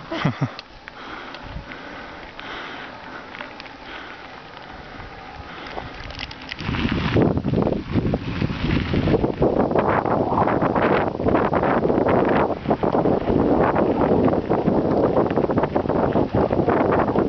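Quiet outdoor ambience, then about six and a half seconds in a sudden, loud, steady rush of wind on the microphone with the rumble and rattle of a bicycle rolling along a gravel track.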